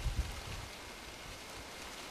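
A steady hiss with a few dull low thumps in the first half second.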